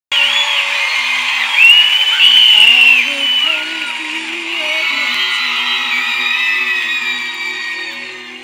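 A woman's solo singing voice, live through a handheld stage microphone, carrying a slow melody in held, stepping notes over soft band backing. High sliding tones sound over the first three seconds.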